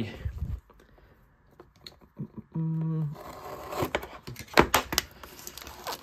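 Plastic shrink-wrap on a card box being slit with a blade and torn away: scraping and tearing with a few sharp clicks in the second half, after a quiet first half with faint ticks.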